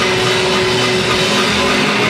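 Loud live concert sound: music from the stage PA blended with crowd noise, heavily distorted in the recording.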